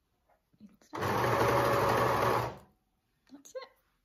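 Janome overlocker (serger) running at a steady speed for about a second and a half, stitching along the next edge after a corner turn. It starts about a second in and stops abruptly.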